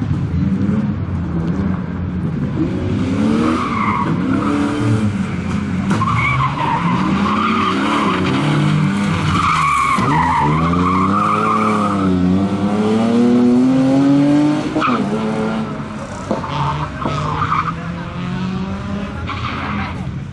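BMW E36 320i rally car's straight-six engine driven hard, the revs rising and falling over and over as it takes a stage, with tyres squealing through the corners. About two-thirds of the way through, the engine climbs steadily to high revs, then drops off sharply.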